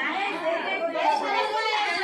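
A group of women's voices chattering and calling out over one another, echoing in a room.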